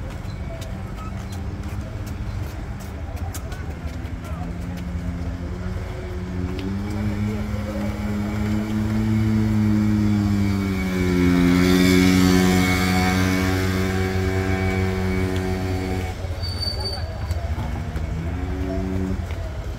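KTM 250 cc single-cylinder racing motorcycles running at low revs as they ride slowly past. One bike gets louder and passes close, and its pitch drops a little after halfway.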